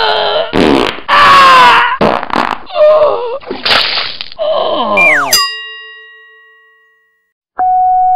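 A quick string of comic meme sound effects: short squealing, groaning noises that bend in pitch. About five seconds in, a downward-sliding tone ends in a ringing chime that fades out over a couple of seconds. Near the end a steady beep tone starts.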